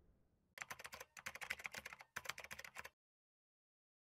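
Keyboard typing sound effect: quick runs of clicks, three bursts in a row, stopping short just before three seconds in.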